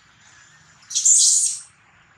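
A long-tailed macaque gives a single loud, high, harsh scream about a second in, lasting under a second.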